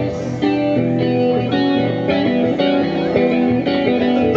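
Live rock band playing an instrumental passage with no vocals, the electric guitar carrying a melodic line of changing notes.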